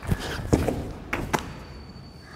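A man jumping down from a height and landing on foam floor mats: a series of soft thumps, the last two close together a little over a second in.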